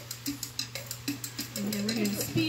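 Fast Tahitian drum music with a quick, even beat of about eight strokes a second, played for ami hip-circle practice.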